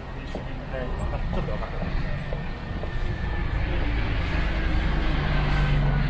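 A bus driving past close by, its low engine rumble building over several seconds and loudest near the end, where a low engine hum comes in.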